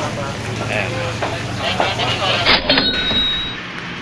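Commuter train and station background: a steady low hum with people talking nearby. About two and a half seconds in it cuts abruptly to a quieter background with a faint high tone.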